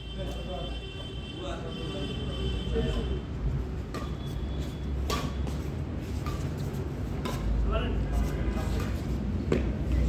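Badminton rally: rackets striking a shuttlecock, heard as several sharp hits in the second half, the strongest about five seconds in and just before the end. People's voices are heard in the first few seconds.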